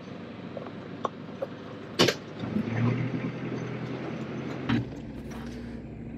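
Telehandler running, heard from the cab: a steady engine noise with a sharp click about two seconds in, then a steady low hum for about two seconds.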